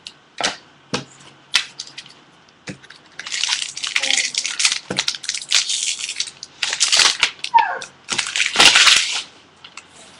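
Baseball trading cards being handled and flipped through by hand: a few light clicks and snaps at first, then a steady dry rustle and slide of card on card from about three seconds in until near the end.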